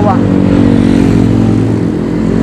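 Road traffic passing close by: a car goes past and a motorcycle approaches, their engines loud and steady.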